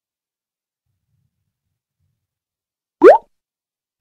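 Silence for about three seconds, then a single short rising 'bloop' sound effect about a quarter second long, marking the change to the next slide.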